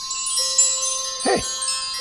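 Magical shimmer of wind chimes, many high bell-like tones starting together and ringing on: a cartoon sound effect for a magic lamp glowing.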